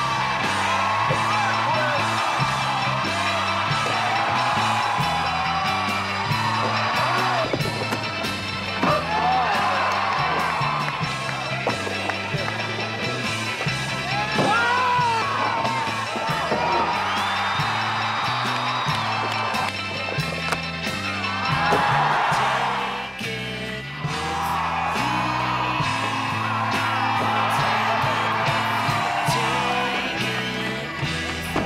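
Background music with a bass line moving in steps.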